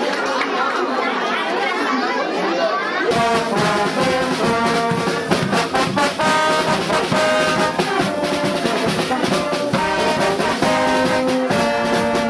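Children and adults chattering in a crowd, then from about three seconds in a carnival wind band playing a tune with trumpets, trombones and flute over a steady beat.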